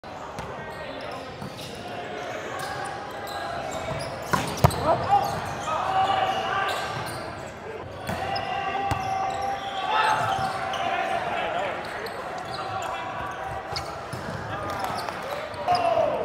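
Volleyball being hit and bouncing during play, a few sharp smacks, the loudest about four to five seconds in, among players' voices calling in an echoing gym.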